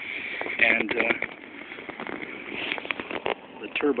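Indistinct voices talking, with scattered sharp clicks and knocks, and a man starting to speak near the end.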